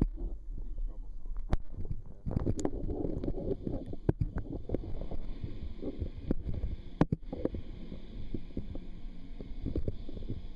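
Muffled underwater rumble and handling noise from a submerged camera as a large octopus's arms wrap around it, with a few sharp knocks, the loudest about seven seconds in.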